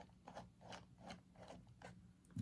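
Small T5 Torx screwdriver driving a tiny screw into a metal SSD enclosure: about five faint scraping clicks, one with each twist of the fingers.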